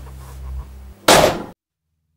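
A low hum fades away, then a door slams shut about a second in: one loud bang that cuts off suddenly into silence.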